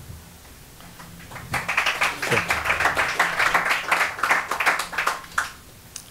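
A small audience applauding in a meeting room. The clapping starts about a second and a half in and dies away near the end.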